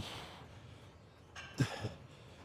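A man breathing hard through heavy dumbbell reps: a sharp exhale right at the start, then two more close together near the end.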